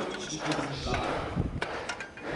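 People talking in the background, with a few short, sharp knocks in the second half.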